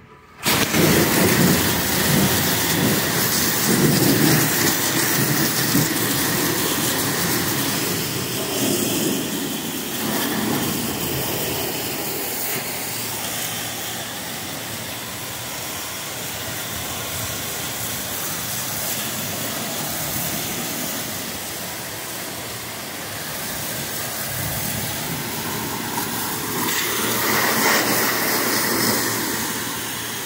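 Pressure washer wand spraying hot water with detergent onto a semi truck's cab and side panels: a loud, steady hiss of spray that starts abruptly about half a second in.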